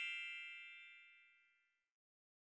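Dying ring of a bell-like chime sound effect, struck just before and fading out within about a second.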